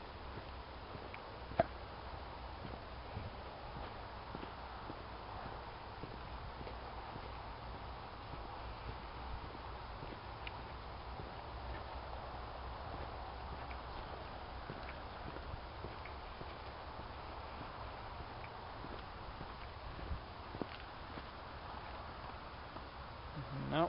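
Footsteps walking steadily along a dirt trail scattered with gravel, many small crunches and ticks over a low steady rumble. One sharper click comes about one and a half seconds in.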